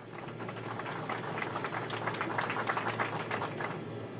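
A group of people clapping: a dense, steady patter of applause over a low hum.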